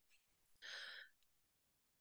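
Near silence, with one faint, short in-breath from the presenter a little over half a second in.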